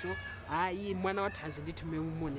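A person's voice making short pitched sounds without clear words, rising in pitch at the start.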